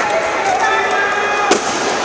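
Badminton rally: racket strings smacking the shuttlecock, two sharp hits about a second and a half apart, over voices in the hall.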